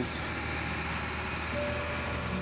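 Loaded lorry's engine running steadily with a low, even hum as it drives slowly through a flooded, muddy road.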